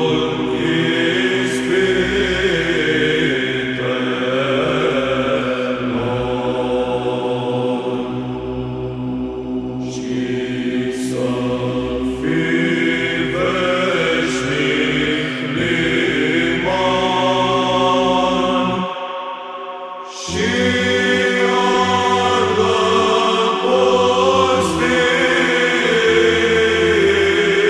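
Romanian Byzantine (psaltic) chant in the fifth mode: voices sing the melody over a steady held low drone. About 19 seconds in, the low drone drops out for a moment and returns about a second later.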